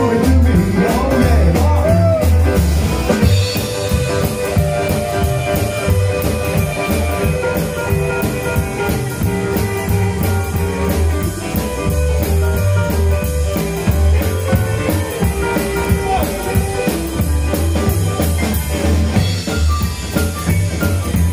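Live rockabilly band playing an instrumental break: hollow-body electric guitar, upright bass, drum kit and electric piano, with a steady pulsing bass line.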